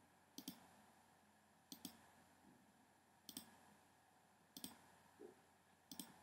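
Faint computer mouse clicks: about five short clicks spaced a second or so apart, against near silence.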